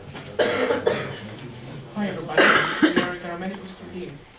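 A person coughing twice, sharply, about half a second in and again about two and a half seconds in, with a little low voice sound between.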